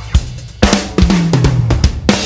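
A funk band's drum kit playing a break of separate hits on bass drum, snare and cymbals. Low electric bass guitar notes come in under it about a third of the way through and step down in pitch.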